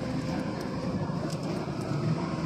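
Steady low rumble of city street traffic, with a few faint clicks on top.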